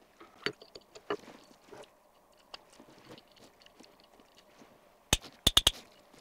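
Small metal parts being handled: light clicks and rustles from a carbide cutter insert and the NeoPlane cutting disc. Near the end comes a sharp click, then a quick run of four clicks as a T-handle torque key engages the disc's insert screw.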